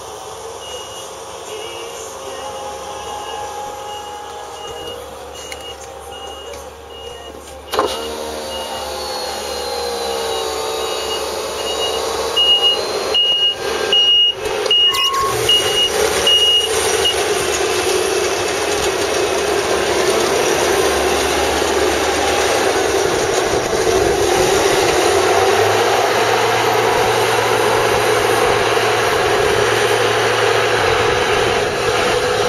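Reversing alarm beeping at an even rate over a combine harvester's running engine. A sharp knock comes about a quarter of the way in. After that the Claas Tucano's engine and machinery grow louder, the beeping stops about halfway, and the machine runs steadily as it moves off.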